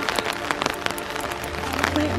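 Rain pattering on an umbrella held overhead, a dense run of small sharp taps. A low steady bass note of background music comes in about halfway through.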